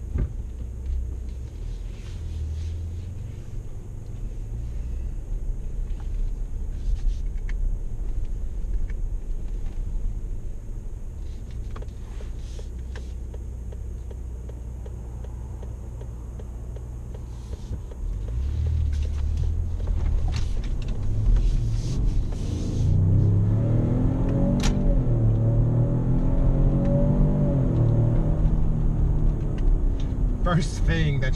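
Inside the cabin of a 2018 Lincoln Navigator L, its 3.5-litre twin-turbo V6 and the road make a low, steady rumble as it pulls onto the road. The sound grows louder a little past halfway, then the engine note rises in pitch under acceleration near the end.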